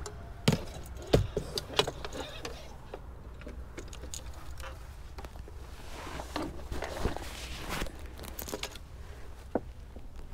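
Handling gear at an open pickup truck cab: a few sharp clicks and knocks in the first two seconds, then rustling with more small clinks and knocks later on.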